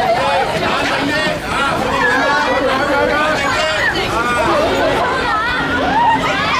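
A packed crowd of fans chattering and calling out over one another, many voices at once.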